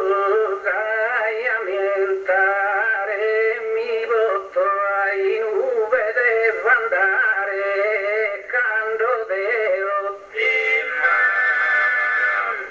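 A man singing solo in a high voice, slow and heavily ornamented, each note bending and wavering: the sung line of an improvising poet in a Sardinian gara poetica, with no chorus under it. The singing pauses briefly a few times between phrases.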